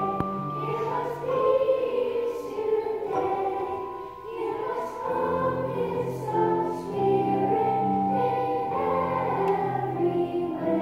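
Children's choir singing a Christmas song, with held notes and a brief softer passage near the middle.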